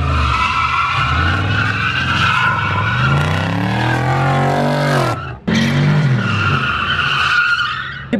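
Chevrolet Camaro drifting: tyres squealing steadily while the engine revs climb and fall. The sound breaks off for an instant about five seconds in, then the engine and tyre squeal pick up again.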